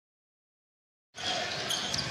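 Silence for about the first second, then game sound cuts in suddenly: a basketball being dribbled on a hardwood court over arena crowd noise.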